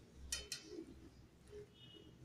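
Two light, sharp clicks about a fifth of a second apart as a hand scoops boiled sweet corn kernels on a steel plate, fingers and kernels tapping the metal; otherwise faint handling sounds.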